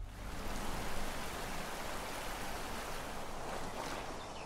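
Steady rush of running water, starting suddenly as the music cuts off.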